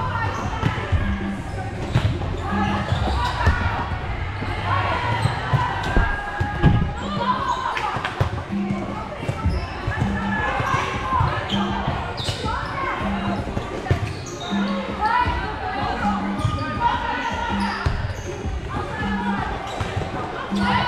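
Volleyball rally in a large gym: sharp hits and bounces of the ball on the hardwood court, with players calling out and voices echoing around the hall.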